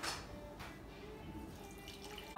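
Poaching liquid poured from a stainless steel pan through a fine-mesh strainer, a faint trickle of liquid.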